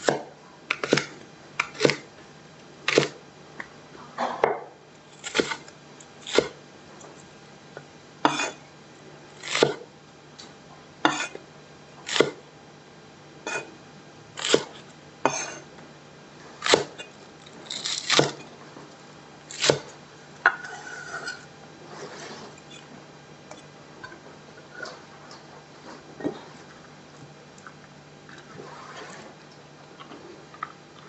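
Knife chopping a leek on a wooden cutting board: sharp single knocks of the blade hitting the board about once a second, turning to fainter, quicker taps in the last third.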